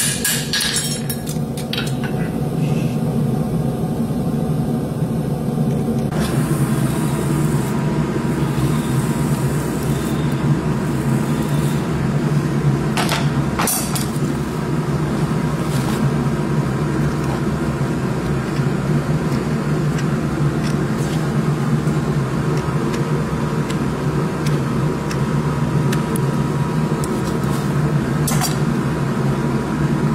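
A steady low machine hum runs throughout. In the first second a steel horseshoe held in tongs is struck a few times with a hammer on an anvil, giving sharp metal strikes. A few more single sharp knocks come later.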